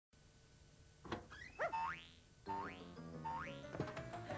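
Children's cartoon theme music starting about a second in, with cartoon sound effects: three quick rising whistle-like glides over sustained tones.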